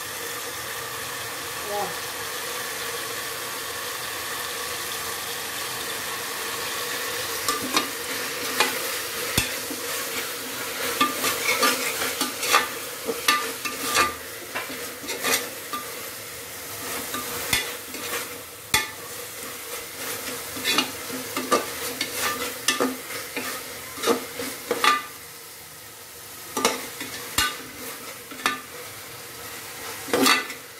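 Onion, tomato and green chillies sizzling in oil in a pressure cooker pot while being stirred with a ladle. A steady sizzle at first; from about seven seconds in, frequent quick scrapes and clicks of the ladle against the pot.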